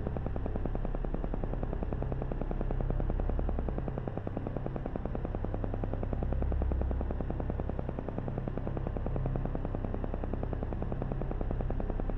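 Meditation background soundtrack: a low synthesizer drone that slowly swells and ebbs, with a rapid, even pulsing running through it.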